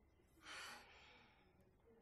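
A woman's single soft sigh, a breathy exhale about half a second in; otherwise near silence.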